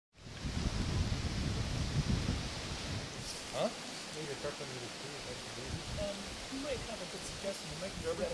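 Low rumbling noise over a steady hiss for about the first three seconds, then faint voices of people talking in the background.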